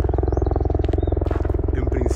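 A steady low mechanical drone with a fast, even pulse, like an engine or rotor running, with a few faint high chirps over it.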